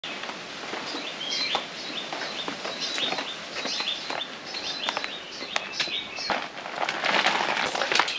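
Small birds chirping in short repeated calls, with a few sharp clicks; near the end a rustling noise grows louder.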